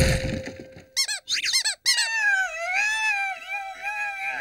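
A cartoon cockroach's squeaky cries: a few quick high squeaks, then a wavering high-pitched squeal. The tail of a loud noisy burst fades out in the first second.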